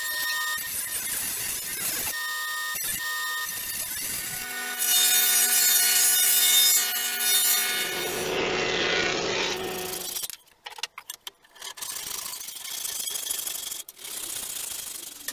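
Woodworking machinery running and cutting jack wood boards, in several short edited segments: a steady machine whine for the first few seconds, a louder, higher-pitched stretch in the middle, then noisier cutting that breaks into short bursts near the end.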